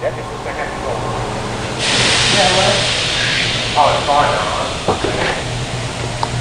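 The power-folding third-row seats of a 2016 Ford Explorer Limited running on their electric motors as the seatbacks fold. It is a whirring hiss that starts abruptly about two seconds in and lasts about three and a half seconds.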